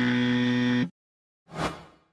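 Electronic glitch sound effect: a harsh, steady buzz like a broken-up TV signal, lasting about a second and cutting off suddenly, then a short swoosh about a second and a half in.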